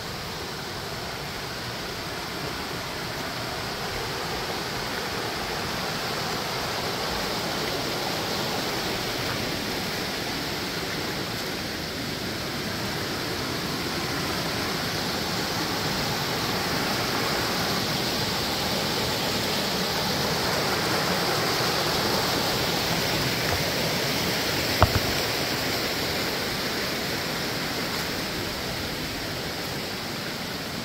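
A rocky stream rushing over boulders and small cascades: a steady rush of water that grows louder towards the middle and eases again near the end. One sharp click comes late on.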